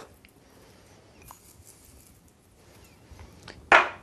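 Faint, light handling sounds as dry green tea leaves are sprinkled by hand over citrus segments in a metal bowl. A single short, loud noise comes near the end.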